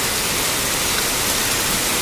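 Heavy rain pouring down, a steady even hiss.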